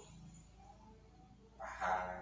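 A faint animal call in the background during a pause in speech, over a low steady hum; a man's voice comes back near the end.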